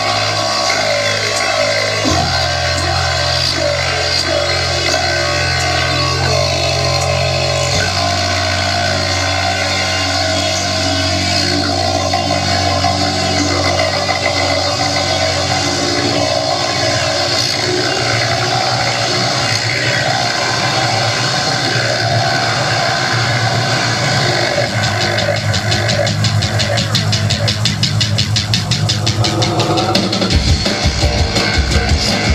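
Live rock band playing loudly with electric guitar: held low bass notes that shift pitch twice in the first eight seconds under a dense wall of sound, and a fast pulsing beat building up in the last few seconds.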